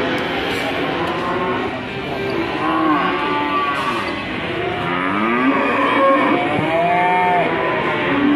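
Cattle mooing again and again, long arching calls from several animals, some overlapping.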